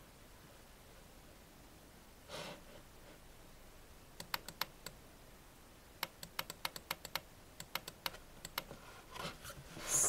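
Quiet, irregular runs of light clicks on a computer keyboard, a few about four seconds in and a longer run from about six to nine seconds, after a brief soft puff of noise about two seconds in.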